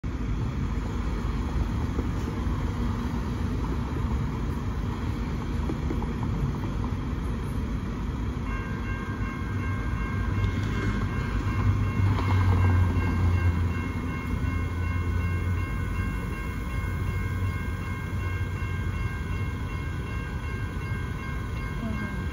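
Safetran Type 3 electronic railroad-crossing bell starting about eight seconds in and ringing steadily as the crossing activates, over street traffic noise. A louder low rumble of passing traffic comes in around the middle.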